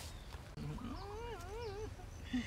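Baby monkey giving a soft, wavering cry: one call starting about half a second in and lasting about a second and a half, its pitch wobbling up and down.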